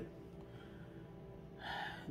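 A quiet pause over faint background music, with a short intake of breath from a woman near the end.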